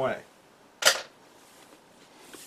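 Shipping straps from a ceramic mold being thrown away, landing with a single sharp clack about a second in.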